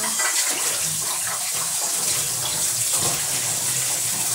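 Rice vermicelli noodles frying in a pan with a steady sizzling hiss while a spatula stirs and tosses them.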